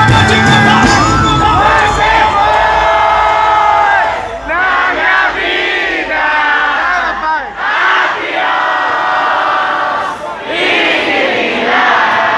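Live band playing while a large crowd sings and cheers along, recorded loud from among the audience. The band's low bass drops out about two-thirds of the way through, leaving mostly the voices.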